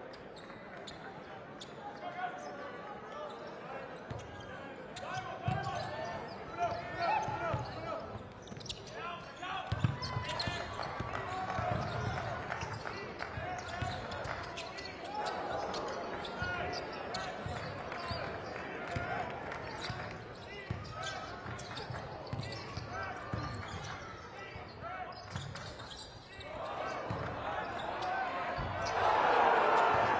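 Basketball game sound in an arena: a basketball being dribbled on the hardwood court, under a hum of crowd voices that grows louder near the end.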